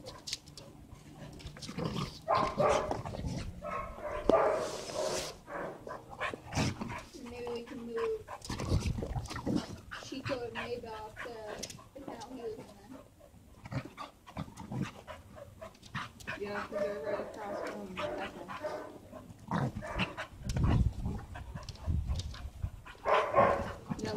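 Two dogs play-wrestling, with dog vocalizations and scuffling coming and going irregularly, and a few low thuds around the middle and again late on.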